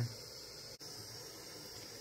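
Butane micro torch flame hissing steadily as it heats a coil of 18-gauge copper wire toward annealing temperature.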